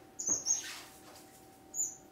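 Small estrildid finches giving short, high chirps: a cluster near the start and one more near the end, over a faint steady hum.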